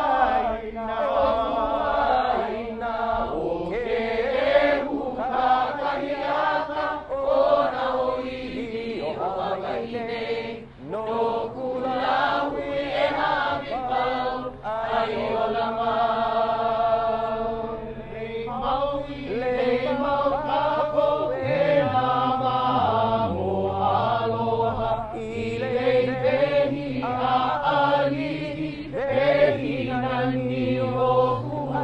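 A crowd chanting together in unison, many voices holding long notes that move from pitch to pitch.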